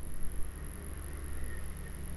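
Quiet room background with a steady low hum, and a brief soft noise right at the start.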